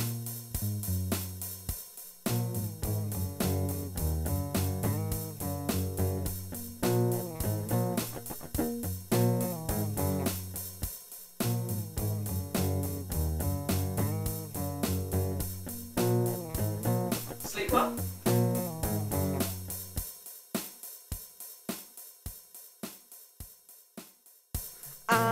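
Instrumental backing music: plucked guitar and bass over a steady ticking beat. The bass drops out about four seconds before the end, leaving lighter plucked notes and the beat.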